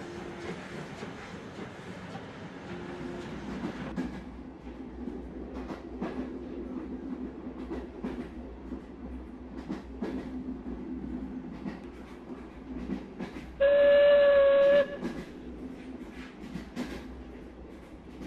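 Model steam train running along the track: a steady motor hum with light clicks. About three-quarters of the way through, a steam-locomotive whistle sounds once for about a second, starting and stopping sharply; it is the loudest sound.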